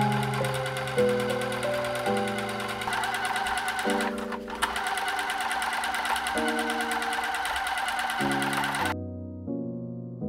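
Bernette B37 computerized sewing machine stitching jersey at a steady fast rate, a rapid even ticking under background music. The stitching stops abruptly about nine seconds in, leaving only the music.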